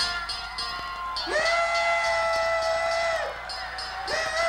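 Live concert sound: one long, high held note, about two seconds long, bending up as it starts and dropping away at the end, over crowd cheering in a large hall.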